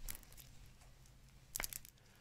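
Faint rustling of hands against clothing close to the microphone, with a short burst of crackling clicks about one and a half seconds in, over a low steady room hum.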